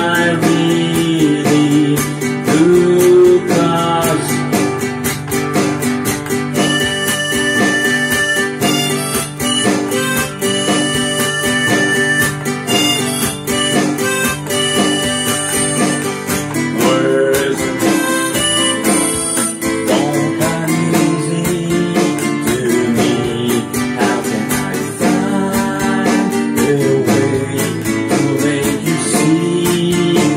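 Harmonica in a neck rack playing the melody over a strummed nylon-string classical guitar, an instrumental break between sung verses.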